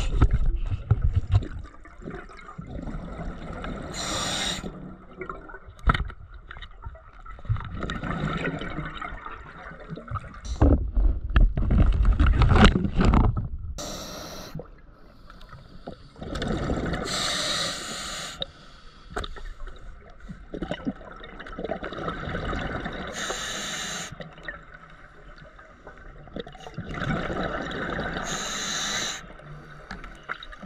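Underwater scuba diver's breathing through a regulator: hissing breaths with bursts of exhaled bubbles every few seconds, over a low rumble of water moving past the camera and a few knocks.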